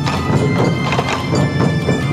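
Massed sansa-daiko hip drums struck with sticks in a driving, even rhythm, with a fue flute melody playing over the drumming.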